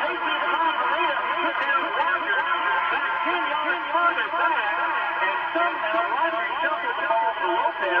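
A man's voice giving play-by-play commentary on a football game, talking without a break.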